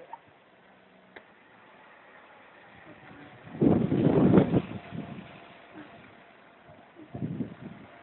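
Double-decker diesel bus driving across a bus station yard. A loud rumbling burst of noise about three and a half seconds in lasts about a second, and a shorter, weaker one comes near the end.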